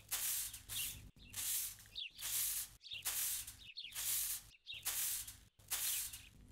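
Short hand-held grass broom sweeping a packed-earth courtyard floor: a brisk run of scratchy swishes, about two strokes a second with short breaks between them.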